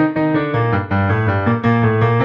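Solo digital piano playing a lively melody with chords over repeated bass notes, the notes changing several times a second.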